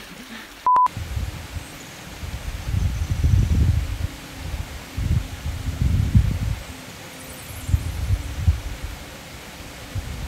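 A short electronic beep, cut in with a brief dead silence about a second in. Then wind buffets the phone's microphone in uneven gusts, a low rumble that swells and fades.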